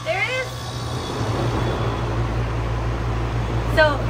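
Central air conditioner's outdoor condenser unit running just after start-up: a steady low hum from the compressor with the condenser fan's rushing air noise building over the first second. The unit is running again on its newly replaced capacitor, the part that had failed.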